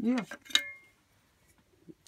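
A single sharp metallic clink with a short ring, as the steel blade of a try square is set down on a wooden workbench.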